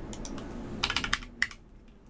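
Computer keyboard keystrokes entering a sign-in PIN: a few light taps, then a quick run of keys just under a second in, and one last sharper keystroke about a second and a half in that submits it.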